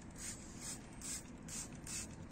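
Hand-pumped trigger spray bottle squirting liquid cleaner onto a car's alloy wheel in quick short hissing spurts, about three a second.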